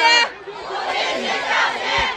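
A large crowd of parents shouting a slogan together in Mandarin, calling for the school principal to be replaced; the voices dip briefly near the start, then swell again.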